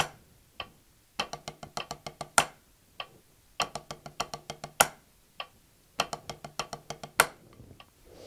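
Wooden drumsticks on a rubber practice pad playing nine-stroke rolls at a slow practice tempo: quick runs of double strokes, each closed by a louder accented stroke, repeating about every two and a half seconds.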